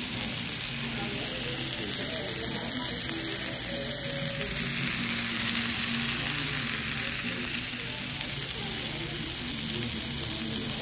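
Chicken fajitas with peppers and onions sizzling on a hot cast-iron fajita skillet: a steady, even hiss that swells slightly about halfway through.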